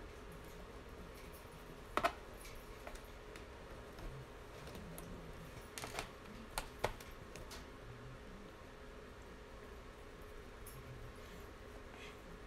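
Faint small clicks and taps of a screwdriver and screws on a laptop's plastic bottom case as screws are backed out: one sharp click about two seconds in and a cluster of three or four near the middle.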